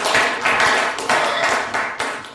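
An audience applauding, many hands clapping together.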